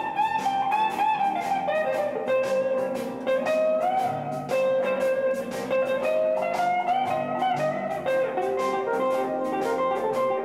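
Electric guitar playing a blues solo: single-note lines with several string bends.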